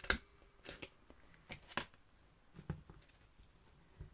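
Crop-A-Dile hand punch snapping through a laminated cover with a sharp click, followed by a few softer clicks and rustles as the punch and cover are handled.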